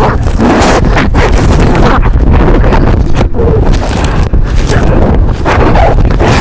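Very loud, heavily distorted noise with a heavy bass rumble, held near full volume throughout.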